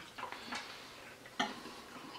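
A person taking a bite of salad from a fork and chewing: faint mouth and fork sounds with a few small clicks, the clearest a little past halfway.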